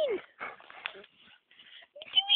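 A dog's short falling whine right at the start, then a few short breathy sounds over about the next second.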